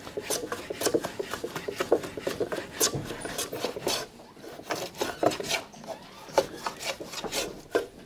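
Long metal hand plane shaving wood off a guitar body's top in repeated short, irregular strokes, each a brief scraping hiss as a curl of wood comes off.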